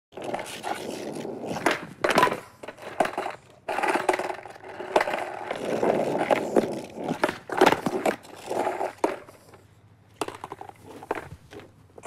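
Skateboard rolling on a concrete driveway, with many sharp clacks and slaps as the deck and wheels hit the ground. After about nine seconds the rolling dies away, leaving a few scattered knocks.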